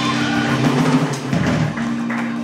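Live blues band: electric guitars and keyboard holding a sustained chord while the drum kit plays a run of strikes, at the close of a song.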